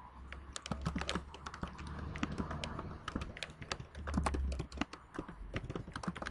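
Typing on a computer keyboard: a quick, uneven run of key clicks, over a low steady hum.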